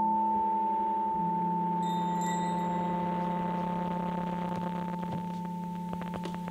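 Electronic logo sting: a held chord of steady, bell-like tones that slowly fades, with a lower tone joining about a second in and a brief high chime shimmer about two seconds in.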